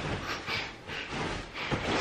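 Clothing rustling and swishing in several quick bursts as a jacket and layered sweatshirts are pulled off in a hurry.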